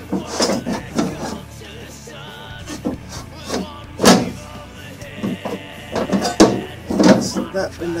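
Metal knocks, clunks and scraping from inside a Holden HD/HR car door as the quarter window and its channel are worked loose by hand. One sharp knock about four seconds in is the loudest.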